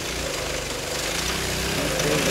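Small engine of a motorized chair kart running steadily, a low even hum that grows slightly louder toward the end.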